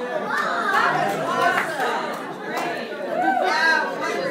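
Overlapping chatter of several people talking at once, with one voice rising louder about three and a half seconds in.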